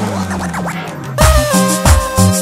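Cumbia dance music over a sound system at a DJ transition: the song gives way to quick up-and-down pitch sweeps like record scratching, then a little over a second in new music comes in loud with held keyboard chords and a regular drum beat.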